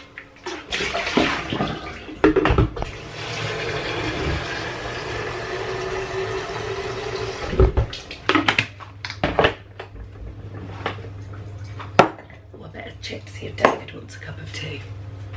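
Water running from a kitchen tap into a kettle for about seven seconds, then stopping, followed by a few knocks and clunks as the kettle is handled. A steady low hum starts about eight seconds in.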